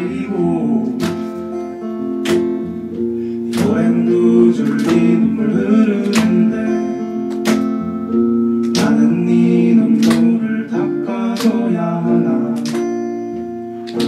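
Steel-string acoustic guitar strumming sustained chords in a slow song, with an accented strum about every second and a quarter.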